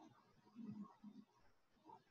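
Near silence: quiet room tone with a couple of faint, soft low sounds about half a second to a second in.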